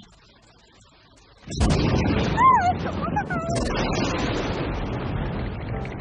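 Thunder sound effect: a sudden loud crack about a second and a half in, then a steady rolling rumble. Shortly after the crack, a puppy's high wavering whimper rises and falls over it.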